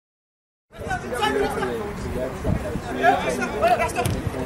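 Silence, then about a second in the match sound cuts in: indistinct voices of players and people at the pitch side calling and chattering over a football match, with a single sharp thud about two and a half seconds in.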